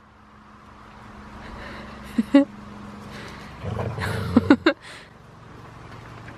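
Siberian huskies playing over a large ball on gravel, giving short high-pitched whining yips about two seconds in and again around four and a half seconds. A louder stretch of scuffling comes just before the second yips, and a steady low hum runs underneath.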